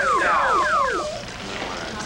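Emergency vehicle siren sounding fast repeated falling sweeps, about five a second, that cut off about a second in.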